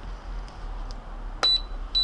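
JJRC X1 radio transmitter being switched on: a sharp click about one and a half seconds in with a short high beep, then a steady high beep starting near the end, the transmitter signalling that it is on and ready to bind.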